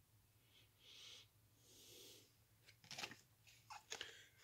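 Near silence: a couple of faint breaths, then a few small clicks and rustles from trading cards being handled, the last just before the end.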